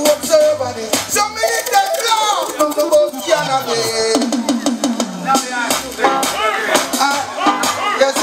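A man singing live into a handheld microphone, his voice sliding in pitch, over a recorded reggae backing track with a steady kick-drum and snare beat played through the PA.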